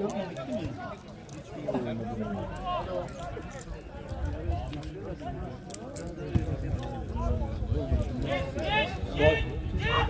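Indistinct talk among spectators, with one voice rising louder near the end; a low rumble lies under it from about four seconds in.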